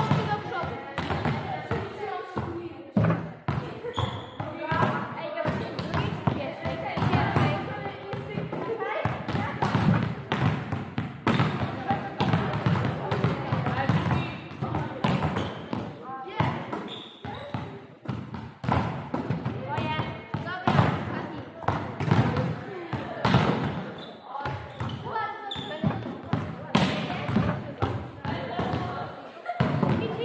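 Volleyballs being struck and bouncing on the gym floor over and over at an irregular pace during group drills, mixed with the players' indistinct voices and calls, all echoing in a large sports hall.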